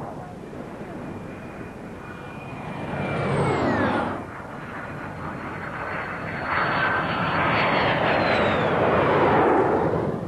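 Gloster Meteor jet fighter flying fast and low past twice: each time the jet noise swells and its whine drops sharply in pitch as it goes by, about four seconds in and again near nine seconds.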